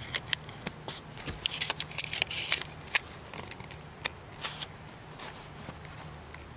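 Handling of small plastic electronics and a USB cable: scattered sharp clicks and short rustles as a cable plug is pushed into a small power bank and the gear is moved about.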